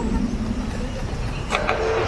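Road traffic: a motor vehicle running on the road close by, with a steady low rumble. About one and a half seconds in there is a short, sharp clatter, and a new steady hum starts and carries on.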